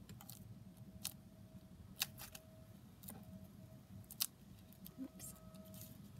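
Faint paper handling: rustling and a few light clicks and taps, about one a second, as hands press a glued paper piece down onto a paper pocket, over a faint steady hum.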